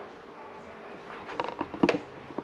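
Quiet room tone with a faint steady hum, then a few light clicks and rustles in the second half from a plastic wiring connector and its cable being handled.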